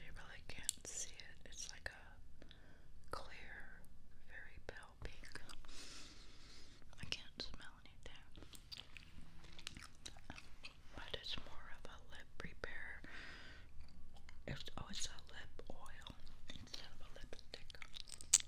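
Bubble gum being chewed close to a binaural microphone: a run of soft, wet mouth clicks and smacks that keeps on throughout.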